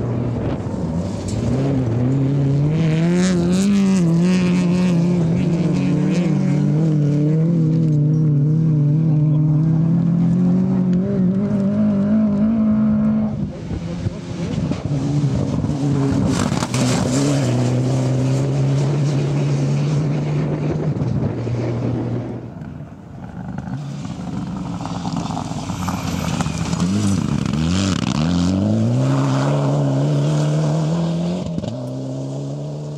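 Rally car engines driven hard, several cars one after another, each engine revving high, shifting gear and rising and falling in pitch as it goes by. The sound drops briefly about a third of the way in and again about two-thirds of the way in as one car gives way to the next. Near the end an engine revs up sharply.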